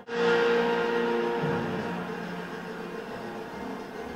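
Background music: a sustained chord that starts suddenly after a brief break and then slowly fades.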